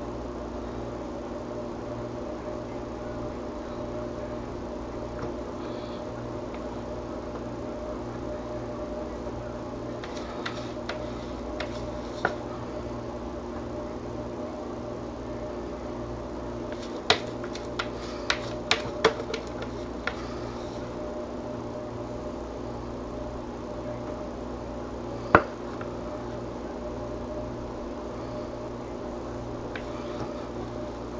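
A spatula scraping and tapping against a plastic pitcher and soap mould while soap batter is spread, giving scattered light clicks: a quick run of them partway through and one sharper knock later. A steady low hum sounds under it throughout.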